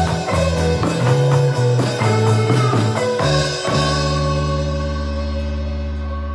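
Instrumental indie rock band music: electric guitar, acoustic guitar, bass guitar and drum kit playing the song's ending, with no vocals. The drums stop about three and a half seconds in and a final chord is left ringing, slowly fading.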